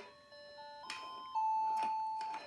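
Electronic toy on a baby walker's activity tray playing a simple beeped melody, one clean note at a time, with a couple of faint clicks as the toys are handled.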